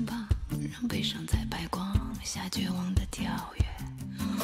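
Live band music: a woman's voice sings a vocal line into a handheld microphone over bass notes and regular drum hits.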